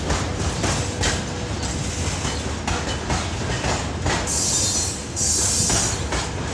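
Freight train of covered hopper wagons rolling past close by, with a steady rumble and repeated clicks and knocks of the wheels over the rail joints. Near the end come two bursts of high-pitched hissing squeal from the wheels.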